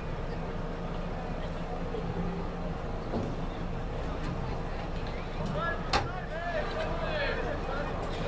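Outdoor ambience at a rugby field: distant shouts from players and spectators over a steady low rumble, with one sharp knock about six seconds in.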